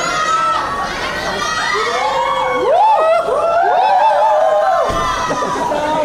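A crowd cheering and shouting, many voices overlapping in high, rising-and-falling calls that swell to their loudest in the middle.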